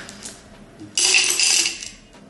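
Small flat black stones dropped by hand into a tall clear vase, clinking against the walls and onto each other. A few light clinks come first, then a loud rattling rush of stones about halfway through that fades away, as the rocks go in as a reserve layer at the bottom of the pot.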